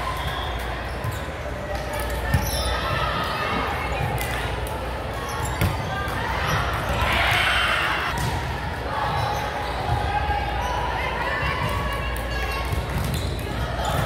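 Volleyballs being struck and bouncing on the hardwood floor across several courts in a large gym, short sharp knocks scattered throughout over a steady hum of players' shouts and chatter. A louder burst of voices comes about halfway through.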